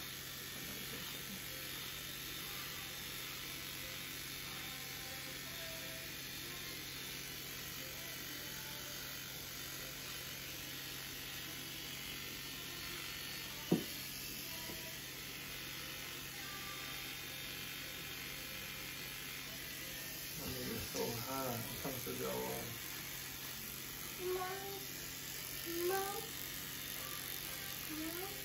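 Electric beard trimmer buzzing steadily as it cuts through a beard. There is one sharp click about halfway through, and brief voices near the end.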